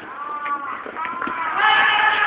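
People's voices talking in a crowd, with one voice rising and falling clearly above the rest; the voices grow louder near the end.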